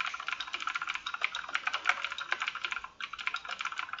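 Typing on a computer keyboard: rapid runs of keystrokes with a brief pause about three seconds in.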